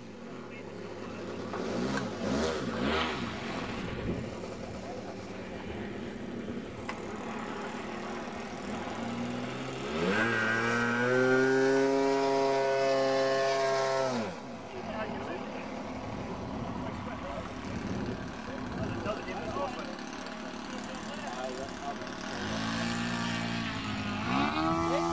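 Radio-controlled model aircraft engine buzzing overhead. Its note climbs about ten seconds in, holds for a few seconds, then drops sharply as the plane passes, and climbs again near the end as another pass begins.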